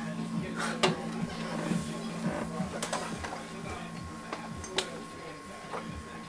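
Faint background music and voices, with a few sharp knocks spread through, the loudest about a second in.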